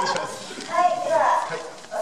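Speech over handheld microphones and a loudspeaker.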